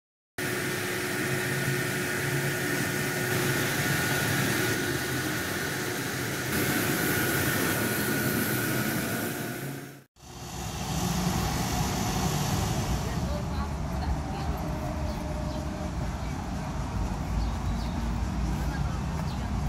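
Steady outdoor background noise with a hum of distant traffic and faint voices. It drops out for a moment about ten seconds in, then carries on as a lower, rumblier background.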